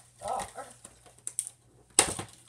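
A girl's short "oh", then a few light clicks as the cardboard toy box and its plastic pieces are handled, ending in one sharp tap.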